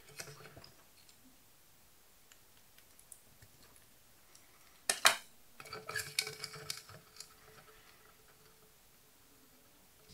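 Small handling noises as fingers work thin speaker wires and a screw-terminal connector at the metal rim of a cardboard chip can: one sharp click about five seconds in, then a short run of little clicks and rubbing. The rest is nearly quiet.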